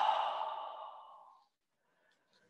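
The breathy tail of a long, audible out-breath sigh ('Ah'), fading away about a second and a half in. It is a deliberate sigh of relief on the exhale that releases the end of a qigong lifting movement.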